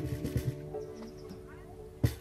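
The last strummed chord of acoustic guitars ringing out and dying away, with a couple of soft knocks near the start and a brief quiet voice in the middle.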